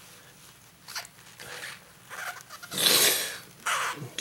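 Knife blade scraping and cutting along a linoleum seam in a few short strokes, the longest and loudest about three seconds in.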